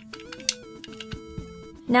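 Background 8-bit chiptune march music, a simple melody in stepping electronic notes, with a single sharp click about half a second in.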